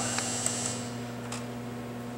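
Steady electrical mains hum from the vibration test equipment, with a faint high whine that fades out about a second in and a few faint clicks.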